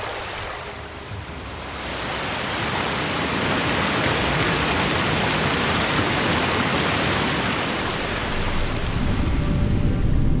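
Steady, dense rushing-water ambience that swells up over the first two seconds and then holds, with more low rumble building near the end.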